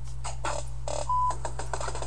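Steady low electrical hum with irregular crackling and scratching noises over it, and one short high beep about a second in.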